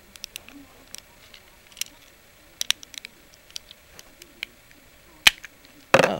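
Small plastic clicks and ticks as the camper shell of a die-cast Dodge Ram 1500 toy pickup is worked at by hand. One sharp snap about five seconds in comes as the camper comes free.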